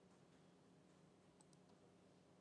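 Near silence: faint room tone, with a few very faint clicks about a second and a half in.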